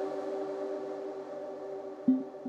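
Modular synthesizer music from an arpeggiator sequence: several held tones sustained in a chord, with a faint repeating low pulse underneath, slowly falling in level.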